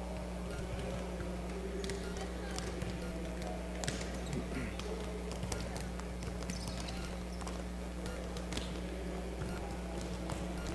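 Volleyballs being served and bouncing on the court: scattered light smacks and knocks over the steady low hum and distant chatter of a large hall.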